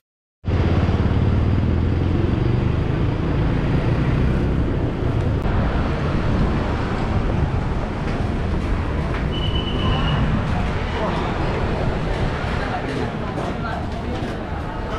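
Street ambience: steady road traffic noise with people's voices mixed in, and a brief high beep about nine seconds in.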